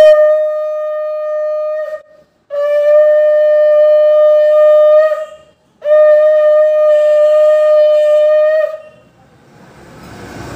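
A conch shell (shankha) blown three times in Hindu puja worship. Each is a long, steady blast of two to three seconds, with short breaks between, and the first is the loudest at its start.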